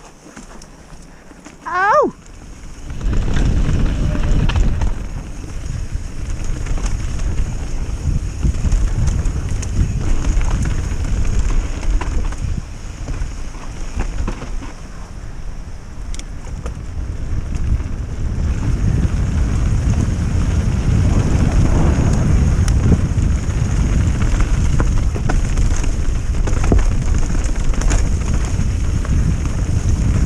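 Wind buffeting the camera's microphone and tyres rumbling over a dirt trail as a mountain bike rides fast down singletrack, a loud, uneven low rumble that starts about three seconds in. Just before it comes a brief shout.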